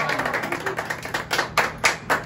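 A small group of people clapping, irregular and uneven, growing sharper in the second half.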